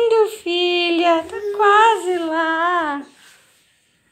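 A small child's high-pitched voice in long, drawn-out sung vowels, stopping about three seconds in.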